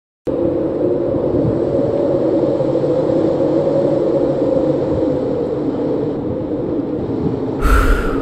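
A steady low rumbling drone that starts abruptly and holds loud and even, with a noisy whoosh swelling up near the end.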